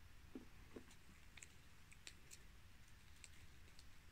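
Near silence with faint, irregular small clicks: a cat licking a creamy treat from a squeezed sachet.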